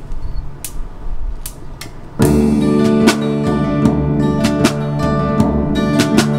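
Drum rods (bundled wooden dowels) clicked together to count in, sharp ticks a little under a second apart, then about two seconds in a band comes in on the beat with strummed acoustic guitar, other guitars and drums played with the rods.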